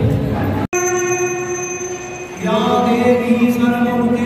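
Crowd chatter, cut off abruptly less than a second in. Then devotional bhajan music over loudspeakers: one long held note, stepping down to a lower held note about two and a half seconds in.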